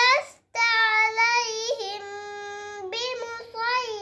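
A young girl chanting Qur'anic recitation in Arabic in a melodic, sung style. Her phrases flow on with a long, steady held note in the middle, then a final phrase falls in pitch near the end.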